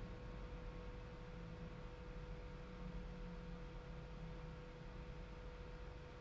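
Quiet room tone: a low steady hum with a thin, constant high tone over faint hiss.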